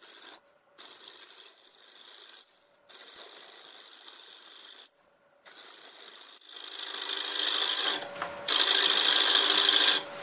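Turning gouge cutting a spinning walnut blank on a wood lathe. It makes several short cutting passes with brief pauses between them, and the cut grows heavier and much louder over the last few seconds.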